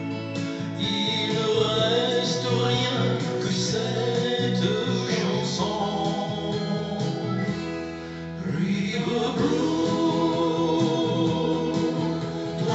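A man singing a slow song into a handheld microphone over a recorded instrumental backing track. The sound eases briefly about eight seconds in, then carries on.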